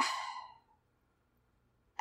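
A person sighs: one breathy exhale that fades out within about half a second.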